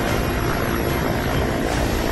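Helicopter hovering, heard from inside the cabin at the open door: steady, loud rotor and engine noise during a winch hoist.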